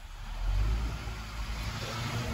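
A car's engine rumbling low, swelling in about half a second in and then holding steady.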